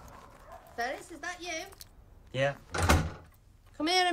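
A person's voice making short wordless sounds that rise and fall in pitch, with a thump about three seconds in.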